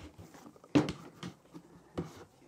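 Cardboard shoebox being handled as a wooden broomstick is pushed through holes in it: faint rustling, a short scrape about three-quarters of a second in, and a sharp click at the end.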